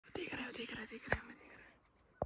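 A person whispering in a hushed voice, with a sharp click about a second in.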